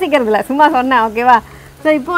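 A woman speaking, with a short pause near the end.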